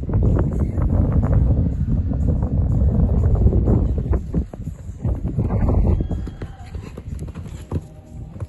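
A show-jumping horse cantering on a sand arena, its hoofbeats coming as a run of dull thuds. A loud low rumble of wind on the microphone lies under the hoofbeats, heaviest in the first half and easing toward the end.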